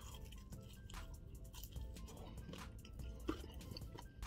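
Quiet background music with faint chewing and wet mouth clicks as a bite of pizza is eaten.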